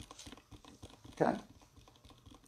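A man says a short "okay" a little past halfway, over faint scattered clicks in a small room.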